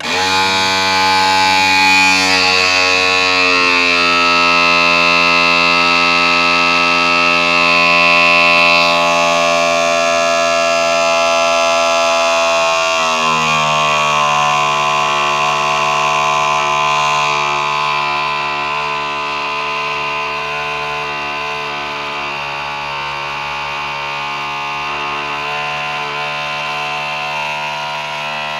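Electric-hydraulic cab-tilt pump of a Mitsubishi Fuso Super Great truck running as it raises the cab: a steady, loud whine that starts at once, drops in pitch about halfway through, and runs a little quieter toward the end.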